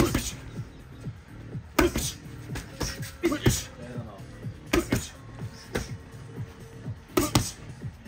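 Boxing gloves smacking in a series of short sharp hits, roughly one a second, as jabs are thrown and parried, over steady background music.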